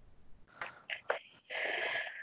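Faint, breathy whispered speech: a person murmuring words under their breath in short bursts.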